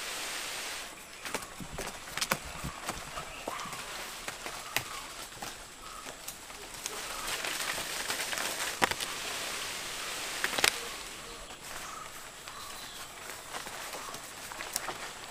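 A person climbing a slender tree trunk by hand and with bare feet: scuffs and scattered sharp clicks against the bark, with rustling foliage.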